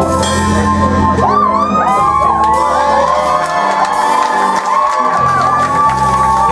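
A rock band playing live on bass and electric guitars, with sustained low notes. From about a second in, the crowd whoops and cheers over the music.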